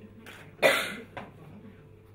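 A person coughing: one loud, sudden cough a little after half a second in, with a brief fainter burst just after it.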